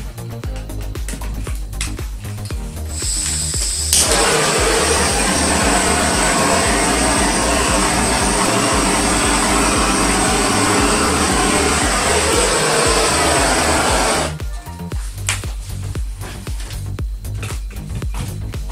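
Handheld gas torch: a hiss of gas starts about three seconds in, a click as it lights, then a steady loud flame hiss for about ten seconds before it shuts off suddenly. It is played over wet acrylic pour paint to bring silicone cells up to the surface. Background music with a steady beat runs throughout.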